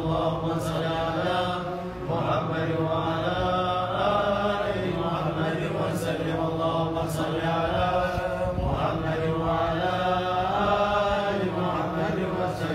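A group of men chanting dhikr together in unison: a continuous devotional chant of repeated phrases, about one every two seconds, over a steady low hum of voices.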